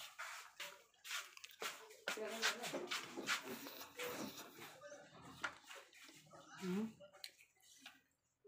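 Close-up chewing of chatpate, a crunchy spicy puffed-rice snack: a quick run of short crisp crunches, with brief murmured voices in between.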